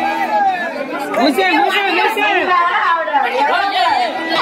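Many voices talking over one another in loud, overlapping chatter.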